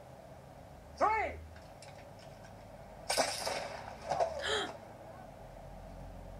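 A man shouts the count of 'three' and, about two seconds later, the duelling flintlock pistols fire in a sudden loud burst of gunshot noise that rings on briefly, with a second, shorter burst about a second after.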